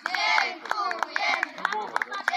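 A children's football team chanting together in high voices, with quick hand claps throughout.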